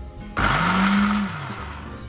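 SilverCrest SSDMD 600 A2 blender's 600 W motor spinning the blades of the empty jug in a short run of about a second. Its whine rises in pitch as it speeds up, then falls back as it winds down.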